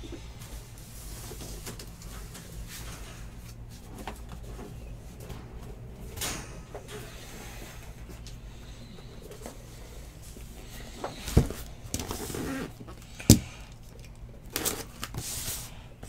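A steady low hum, then from about eleven seconds in a few sharp knocks and rustling as a cardboard case of card boxes is brought in, set down and handled. The loudest knock comes about two seconds after the first.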